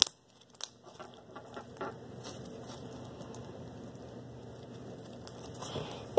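Fluffy slime mixed with crunchy beads being squeezed and kneaded by hand, giving faint scattered crackles and small pops. A sharp click right at the start.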